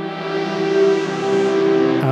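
Stylophone Gen X-1 synth pad played with the stylus: several notes held together, run through the Zoom MultiStomp's plate reverb and reverse reverb. The reverb wash swells up and fills out the highs about a second in.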